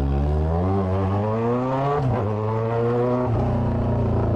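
Motorcycle engine accelerating hard through the gears: its pitch climbs steadily, drops at an upshift about two seconds in, climbs again, then shifts once more after about three seconds and runs steady.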